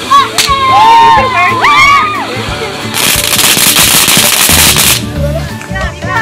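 A ground fountain firework going off: a sharp crack about half a second in, then a loud crackling hiss of spraying sparks for about two seconds that cuts off abruptly. Excited shouting voices come in between.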